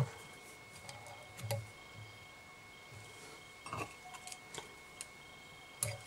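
Faint, scattered small clicks and short rustles of fingers, tying thread and tools at a fly-tying vise as the thread is tied off at the fly's head, with a few quick clicks bunched together a little past the middle.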